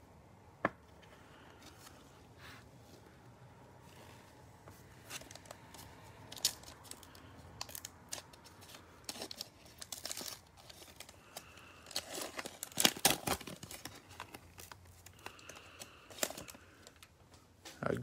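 Cellophane wrapper of a trading-card cello pack being crinkled and torn open by hand, a run of irregular sharp crackles that is loudest about two-thirds of the way through. A single sharp click comes about half a second in.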